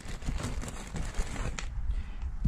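Handling noise from plastic wrap and a tail-light wiring bundle being rustled, with a few light clicks near the end.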